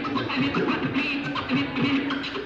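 Vinyl records being scratched by hand on two turntables, a run of fast back-and-forth scratches over a playing record.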